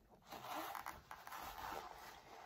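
A picture book's paper page being turned, rustling and sliding against the other pages, starting about a third of a second in.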